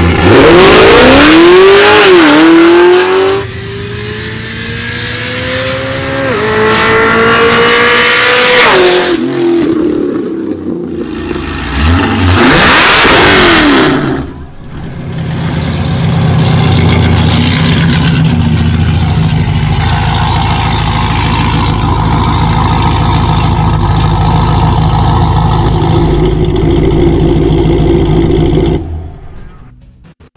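Supercharged V8 of a Cadillac CTS-V at full throttle: the revs climb, drop at each upshift and climb again through the gears. About 12 seconds in comes a loud rushing burst, followed by a steadier, lower engine sound that cuts off just before the end.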